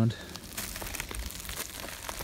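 Footsteps on dry forest litter: irregular light crunching and crackling of twigs and pine needles.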